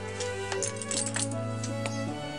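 Instrumental background music over several sharp taps of a wooden mallet striking a woodcarving gouge as it cuts into the wood.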